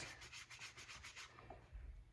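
Paintbrush bristles rubbing paint onto a board in quick, short, faint strokes, about seven a second, stopping a little past halfway.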